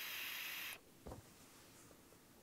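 Faint steady hiss of air drawn through a Joyetech Cuboid Mini e-cigarette's tank and sub-ohm stainless steel notch coil during a puff, cutting off sharply less than a second in, followed by a brief faint knock.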